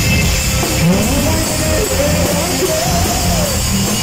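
Live heavy metal band playing loud: distorted electric guitar over drums and bass, with a melody line winding up and down.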